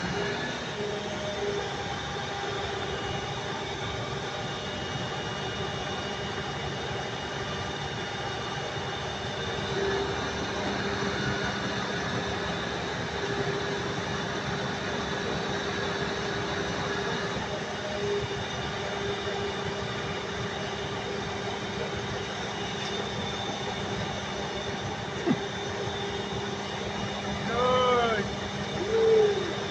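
Truck-mounted hydraulic crane running while it lifts a truck: a steady engine and hydraulic hum with several held tones, and one sharp click near the end.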